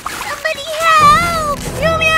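A cartoon child's voice making wordless gliding exclamations, the longest about halfway through, with background music coming in about a second in.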